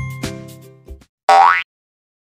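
The last notes of an upbeat children's jingle fade out over the first second. About a second later comes one short cartoon sound effect, a quick rising boing-like glide in pitch, followed by silence.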